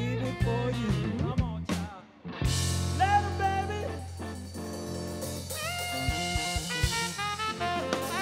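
Live blues band of saxophone, electric guitar, bass and drum kit playing. About two seconds in the band stops briefly, then comes back in together with a cymbal crash, a held low bass note and sustained, bending melody notes over drum strikes.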